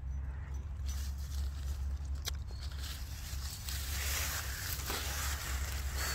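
Grass and leafy plants rustling as someone pushes through dense vegetation, the rustle growing louder in the second half, over a steady low rumble, with one short click a little after two seconds in.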